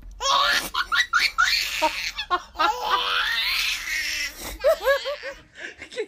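A baby laughing hard in high-pitched, rapidly repeating peals, then a run of shorter, lower laughs near the end.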